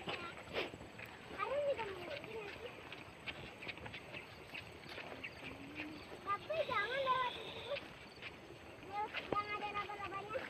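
Faint voices of people talking and calling out, a few separate phrases with a longer call near the end, over scattered clicks and knocks.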